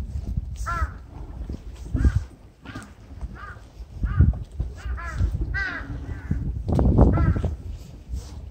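Crows cawing, about eight short harsh caws spread roughly a second apart, over a steady low rumble.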